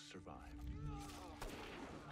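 Faint TV drama soundtrack: a low rumble under a scene change, with a rush of noise and a few sharp hits from about a second in.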